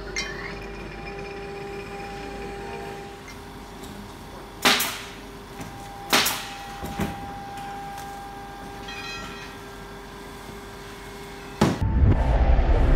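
Three sharp knocks over a steady low hum with faint held tones. Near the end, loud music starts abruptly.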